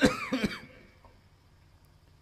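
A man clearing his throat once, a short rough burst in the first half-second, followed by a pause with little sound.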